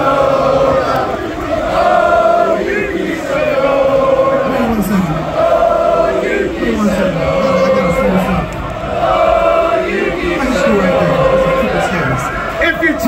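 A large crowd chanting a short sung phrase over and over, about once every two seconds, each time a held note that falls away at the end.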